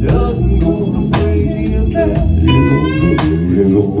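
Live rock band playing loudly: electric guitar, drum kit and keyboard, with a few sustained notes sliding up in pitch near the end.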